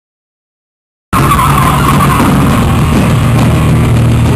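Silence for about a second, then a live rock band cuts in abruptly mid-song, loud and steady.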